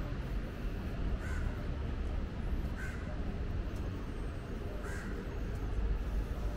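A crow cawing: three short single caws a couple of seconds apart, over a steady low rumble.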